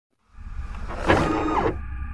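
Mechanical sound effects for an animated machine intro: a low rumble comes in a moment after the start, then motorised whirring and sliding, with a tone that glides downward about a second in.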